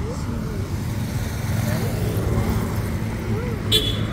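Steady low rumble of a running vehicle, with faint voices in the background and a short click near the end.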